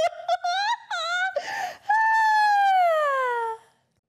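A woman's high voice singing a few short rising notes, then a breathy noise, then one long note gliding down and fading out.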